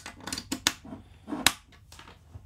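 Quarter-inch instrument cable plugs being pushed into the metal output jacks of a multi-effects pedal: a few sharp clicks, the loudest two about two-thirds of a second and a second and a half in.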